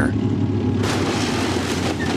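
M1 Abrams tank's main gun firing: a dense, steady rumbling noise that thickens about a second in and holds without a sharp crack.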